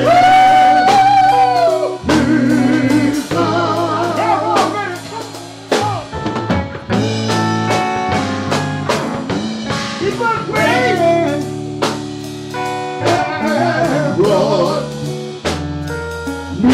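Live blues band playing: electric guitar and drum kit, with wordless singing over them.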